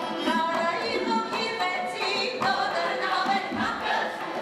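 Armenian folk ensemble singing a folk song, a choir of voices with women's voices to the fore.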